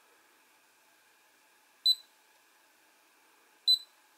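Two short, high-pitched electronic beeps, nearly two seconds apart: the RunCam Split camera's button-press feedback beep as its menu is navigated.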